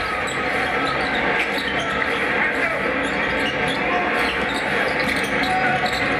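Basketball game broadcast sound: a ball being dribbled on a hardwood court over a steady wash of arena noise.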